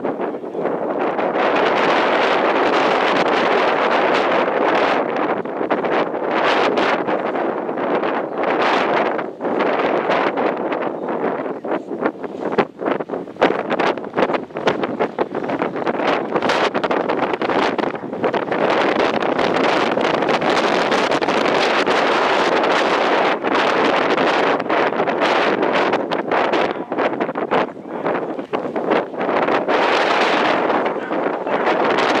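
Wind buffeting the camera microphone: a steady, loud rushing with brief irregular dips.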